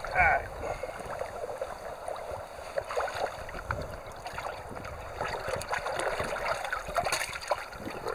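Creek water rushing steadily, with irregular splashing and sloshing as a bucket of water and trout is lowered into the stream and tipped out, releasing the fish.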